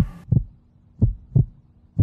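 Suspense heartbeat sound effect: low double thumps, about one pair a second, over a faint steady hum.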